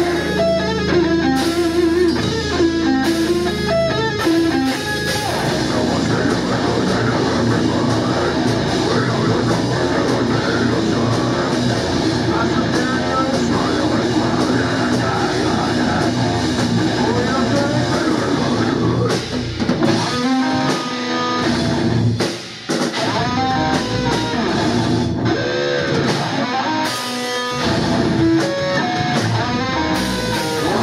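Live heavy metal band playing: distorted electric guitar, bass and drums. Picked guitar notes stand out for the first few seconds before the full band comes in thick, with a brief break about three-quarters of the way through.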